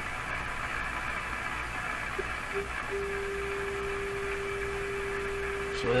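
Hallicrafters S-38 tube receiver's speaker giving static hiss and hum, with the signal generator's steady test tone coming through. The tone is absent at first, blips briefly twice, and comes back about three seconds in, then holds. It is an unexpected spurious response picked up as the generator is tuned across the band.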